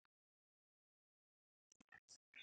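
Near silence, apart from a few faint clicks near the end.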